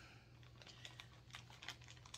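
Near silence: room tone with a faint steady low hum and a few faint light clicks and taps scattered through it.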